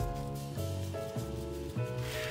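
Background music: sustained notes that change every half second or so.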